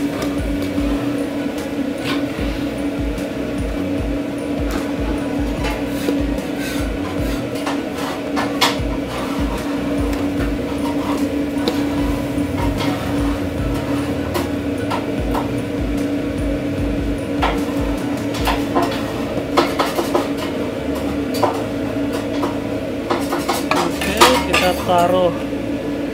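Metal tongs clinking and scraping against stainless steel bowls as stir-fried noodles and chicken are served out, with a cluster of louder clinks near the end. A steady mechanical hum runs underneath.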